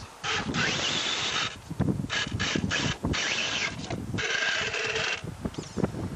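Radio-controlled rock crawler's small electric motor and gears whining in short stop-start bursts as it is driven over rocks, over a steady hiss of outdoor noise.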